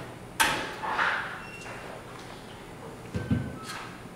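A wall oven's door slams shut with a sharp clunk that rings out for about half a second. A few lighter knocks near the end come from a ceramic casserole lid being lifted off.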